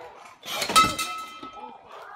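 Brass wall-mounted bell struck once, hard, ringing out with a bright metallic clang that fades over about a second as the bell breaks loose from its wall mount.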